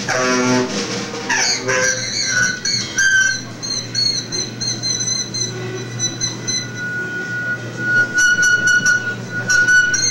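Free-improvised saxophone and drums. The saxophone plays low repeated notes for the first second or so, then climbs into shrill squeals and long held high whistling tones over the drum kit, with a flurry of quick stick strikes near the end.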